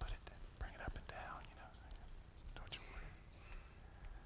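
Faint whispered voices, with a few soft knocks, the strongest near the start and about a second in.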